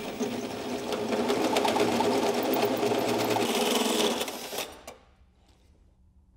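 Cordless drill turning a 1¾-inch hole saw slowly through the sheet-steel firewall, the teeth chattering steadily as it cuts a half-circle notch above the master cylinder opening. The cutting stops suddenly about five seconds in, with the hole cut through.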